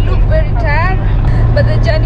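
Steady low road and engine rumble inside a moving car's cabin, under a woman speaking.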